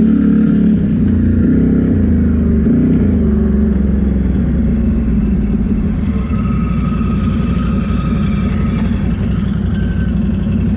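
ATV engine heard from on board while riding, the revs rising and falling over the first few seconds, then running lower and steadier as the quad slows.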